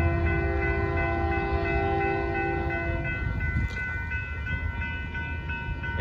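Union Pacific freight locomotive's air horn sounding a steady blast that stops about halfway through, over the low rumble of the train, while a grade-crossing warning bell keeps ringing.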